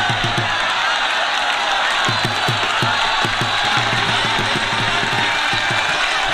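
Dhol drum beaten in a fast, even rhythm over a cheering crowd. The drumming breaks off about half a second in and picks up again about two seconds in.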